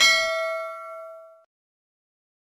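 A single bell-like 'ding' sound effect, struck once and ringing out, fading away over about a second and a half.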